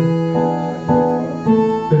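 Bandoneon and acoustic guitar playing a tango accompaniment: held bandoneon chords that change about every half second, under plucked guitar notes.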